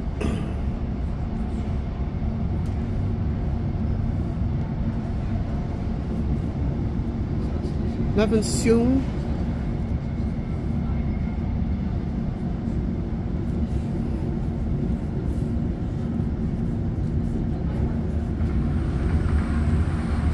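Cabin noise of a Class 156 Sprinter diesel multiple unit on the move: a steady low rumble from the underfloor diesel engine and wheels on rail, with a constant hum. Near the end a train passing on the next track adds a rising rush of noise.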